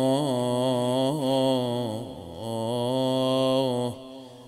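A man's solo voice chanting an Arabic Shia mourning lament (nai), drawing out long held notes with a slight waver. The note sags and breaks briefly about two seconds in, then is held again and stops just before the end.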